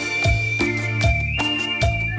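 Live cumbia band playing the opening of a song: a high, held lead note that steps up in pitch partway through, over a steady bass guitar line and regular drum hits.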